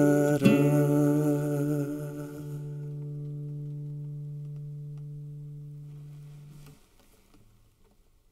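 Nylon-string classical guitar playing the final strummed chord of a trova song, which rings out and fades before being cut off about seven seconds in.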